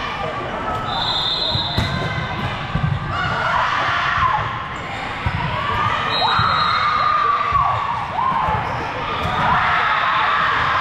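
Volleyballs thumping off hands and the hard gym floor, echoing through a large gymnasium, with a few sharp strikes standing out. Voices call and chatter throughout.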